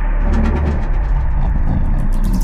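Cinematic sound design: a deep, steady low rumble under a quick, uneven run of light mechanical clicks that starts a moment in.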